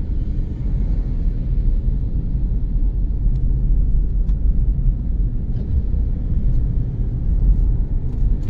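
Car cabin noise while driving at speed: a steady low rumble of the engine and tyres on the road, with a few faint ticks.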